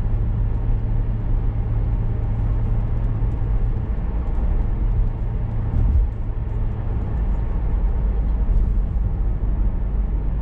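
Steady low rumble of tyre and engine noise heard from inside a moving car. A low hum in it drops away about four seconds in, and there is a brief swell about six seconds in.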